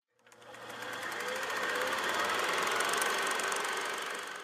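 A logo sound effect: a steady, rapid mechanical rattle, like a running machine, that fades in over the first second, holds, and starts to fade near the end.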